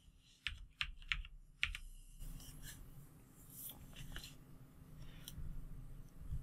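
Computer keyboard and mouse clicks: four or five sharp clicks in the first two seconds, then fainter scattered clicks over a low hum.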